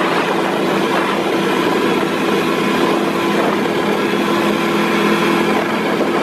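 Aktiv Panther snowmobile engine running at a steady pitch while riding at an even speed.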